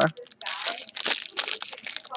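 Clear plastic cellophane bag crinkling as it is handled and turned over in the hands, an irregular run of crackles.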